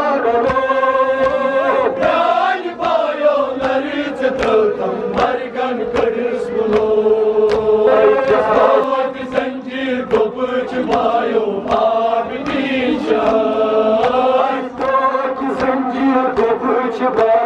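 Male voices chanting a Kashmiri noha, a mourning lament, together through handheld microphones in a steady sung chant. The chant is accompanied by frequent sharp slaps of rhythmic chest-beating (matam).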